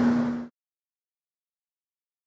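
A steady workshop machine hum with one pitched tone cuts off abruptly about half a second in. Dead silence follows.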